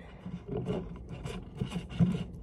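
Faint rubbing and light clicks of small plastic spray bottles being handled and shifted on a tabletop.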